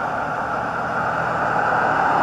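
Steady road traffic noise, a continuous even hiss with no distinct events.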